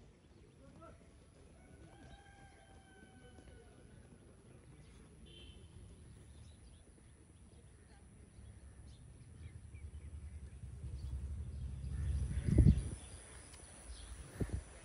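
Faint distant calls in the first few seconds. Then a low rumble of wind and handling noise on the phone's microphone builds as the camera is carried across the field, ending in one sharp thump about twelve and a half seconds in.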